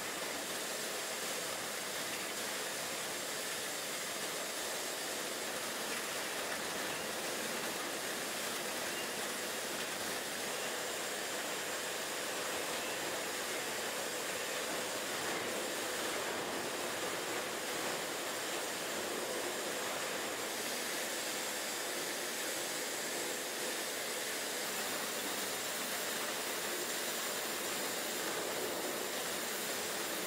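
Steady, even hiss with a faint hum from a hydraulic road-simulator test rig and its lab machinery running, with no knocks or rhythm.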